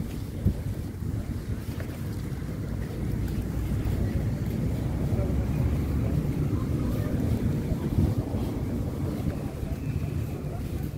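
Wind buffeting the microphone, an uneven low rumble that grows a little louder in the middle, with a sharp knock about half a second in.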